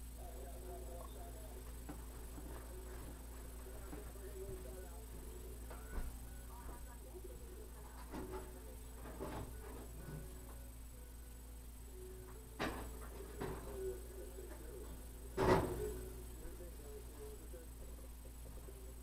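Scattered knocks and clunks of tools and objects being handled in a workshop, over a steady low electrical hum; the loudest knock comes about two and a half seconds before the end.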